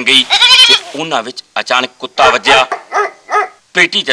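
Goat-like bleating: a long wavering call near the start, then several shorter bleats with short gaps between them.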